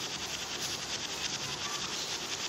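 Steady background insect chirring: a high, fast-pulsing buzz that runs on without a break, over low room noise.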